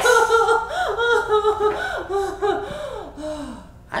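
Two people laughing, in breathy, gasping bursts that gradually die down.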